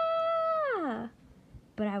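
A woman's voice acting out a scream: a long, high 'ahhh' held on one note, then sliding down in pitch and dying away about a second in. Speech resumes near the end.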